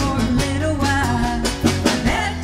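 Live country-rock band playing a full-band song, with drum kit, bass and guitar. Two sharp drum hits land near the end.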